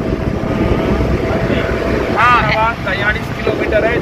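Steady road and wind noise with engine drone inside a Maruti Suzuki Eeco van moving at highway speed, with a faint steady tone in the first half. A person's voice comes in about halfway.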